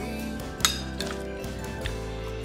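Metal spoon clinking against a ceramic plate: one sharp clink about two-thirds of a second in, then a couple of lighter taps, over background music.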